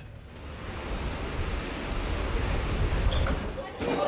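A steady rushing noise of wind and rough sea, heaviest at the low end and slowly building, dipping just before the end.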